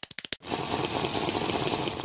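Rapid clicking, then about half a second in a loud, coarse rattling noise that holds steady.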